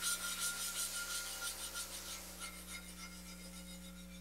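Quick, rhythmic rubbing strokes of hand-finishing work on a marble sculpture's surface, several strokes a second, growing fainter toward the end.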